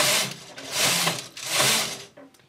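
Knitting machine carriage pushed across the needle bed, knitting rows in the main colour: three passes, each swelling and fading, the last ending just before speech resumes.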